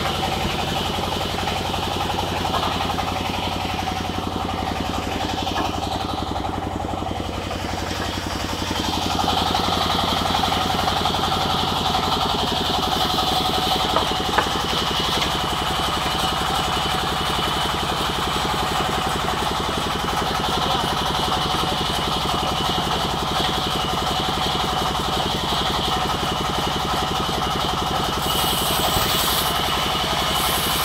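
Sawmill band saw and its drive running steadily, a continuous engine-like hum. It gets a little louder about a third of the way in, with a couple of sharp clicks near the middle.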